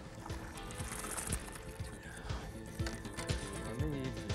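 Background music with a steady low beat, about two strokes a second.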